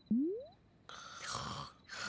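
A quick rising whistle-like glide, then about a second in a breathy cartoon snore lasting just under a second.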